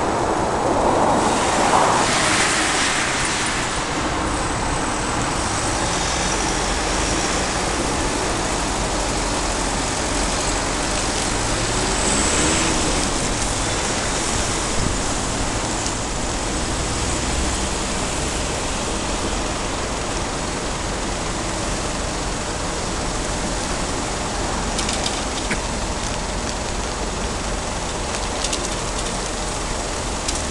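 Steady city road-traffic noise, a continuous rush of vehicles on a multi-lane road, swelling slightly a couple of times as vehicles pass.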